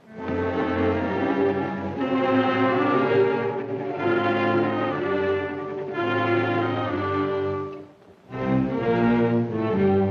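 Orchestral film score led by bowed strings, playing slow held chords that change every second or two. It breaks off briefly about eight seconds in, then resumes.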